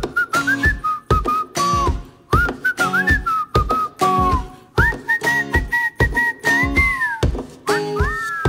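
A whistled melody, sliding between notes and holding a long high note about five seconds in, over a steady drum beat in a pop song's instrumental break.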